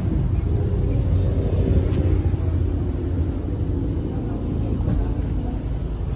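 2009 Mercedes GL450's V8 engine idling, heard at the rear of the vehicle as a steady low rumble. The idle is smooth, a sign of an engine in good order.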